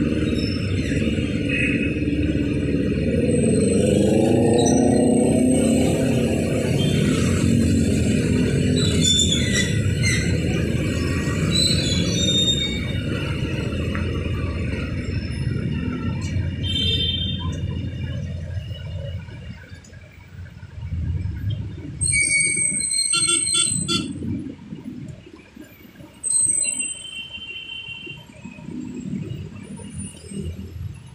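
Heavy road traffic passing close by: a steady wash of engine and tyre noise, with one engine's note rising about four seconds in. The traffic noise thins after about eighteen seconds, and short high squeals come twice near the end.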